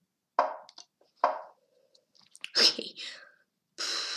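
A boy muttering and whispering to himself, with no clear words: two short murmurs, then breathy, whispered sounds, and a longer breathy exhale near the end.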